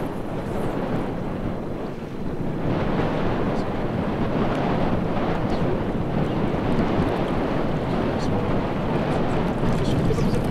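Steady wind buffeting the microphone, easing briefly about two seconds in.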